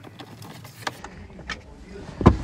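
Quiet handling sounds of a screwdriver backing out a self-tapping screw from plastic interior trim, with a few light clicks.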